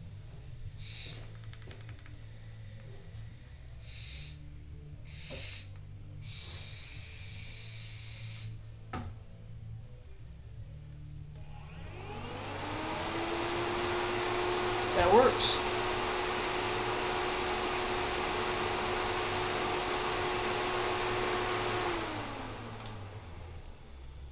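Auxiliary electric radiator fan briefly powered on a test hookup to check which polarity makes it push air through the radiator: it spins up with a rising whine about halfway through, runs steadily with a rush of air for about ten seconds, then winds down near the end. A brief knock sounds shortly after it reaches speed.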